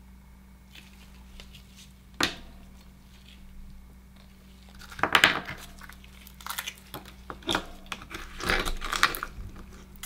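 A single sharp click about two seconds in. From about five seconds, a run of crunchy clicks and scrapes as an Akoya pearl oyster's shell is handled and an oyster knife is worked in to pry it open.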